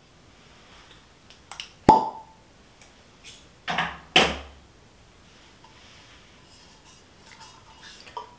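Glass wine bottle being opened and handled: a sharp clink with a brief ring about two seconds in, then two duller knocks around four seconds.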